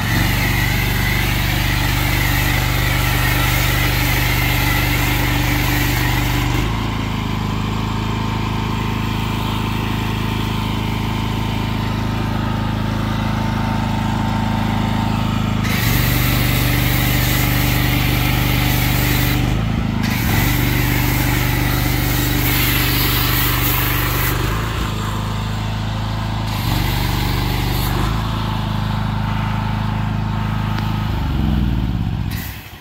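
Pressure washer engine running steadily while a foam cannon sprays foam with a hiss. The spray stops and starts several times as the trigger is let go and squeezed again, and the engine note shifts with each change.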